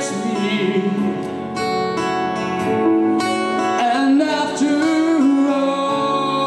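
Live band music: a man singing over strummed acoustic guitar.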